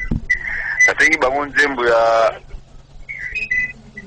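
A person talking in short phrases over a faint steady low hum, with brief steady high tones between the phrases.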